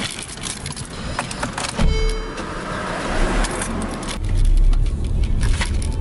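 Car keys jangling and clicking at the ignition, then the car's engine starts about two seconds in and keeps running, getting louder from about four seconds in.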